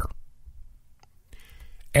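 A short pause in close-miked speech: faint mouth clicks, then a soft in-breath just before the voice resumes near the end.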